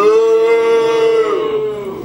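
A woman's voice holding one long drawn-out vowel at a steady, fairly high pitch for nearly two seconds, sagging slightly near the end.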